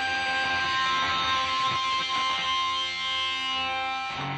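Electric guitar in Drop C tuning holding a final chord that rings out, with some of its higher notes fading away about halfway through.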